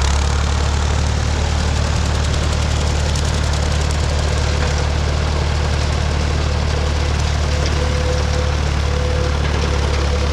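Ford 3600 tractor's three-cylinder engine running steadily under load, driving a bush hog rotary cutter through heavy overgrown grass. A faint whine comes and goes in the second half.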